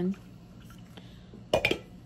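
Quiet room tone, then about one and a half seconds in a short, loud clatter of clicks: handling noise as a plastic tumbler is put down.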